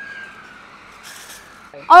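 Quiet outdoor background with a faint steady tone at first and a brief hiss about a second in, then a woman's voice near the end.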